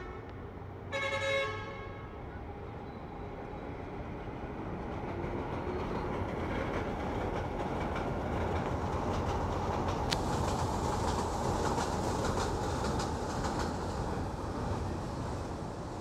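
Elevated metro train passing alongside, its rumble and wheel noise building over several seconds, loudest in the middle, then easing off. A brief horn toot about a second in.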